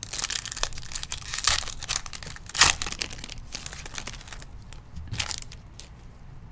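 A foil trading-card pack wrapper being torn open and crinkled by hand. It makes a run of crackling and ripping, loudest about two and a half seconds in, with one last crinkle near the end.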